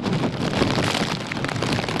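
Steady rushing noise of typhoon wind and rain.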